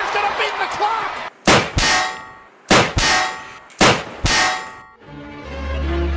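Six loud, ringing metallic clangs in three pairs, like a metal pan being struck. Music comes in near the end.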